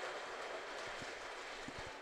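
Faint, steady background noise of an ice hockey rink, with a few soft low thumps about one second in and again near the end.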